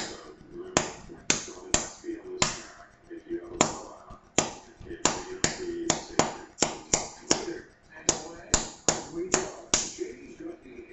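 Toy cap-gun caps popping one after another as a blue laser beam ignites them. There are about two dozen sharp cracks at irregular intervals, a few per second.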